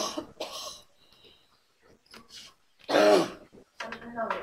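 A person clearing their throat and coughing in short bursts, a couple near the start and the loudest about three seconds in.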